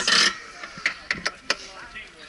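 Ride harness strap being tightened and fastened: a brief rasping pull of webbing, then about five sharp clicks from the buckle hardware.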